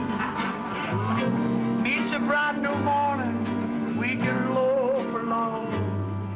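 A male vocal group singing to guitar and upright bass accompaniment, the bass stepping from note to note under the voices.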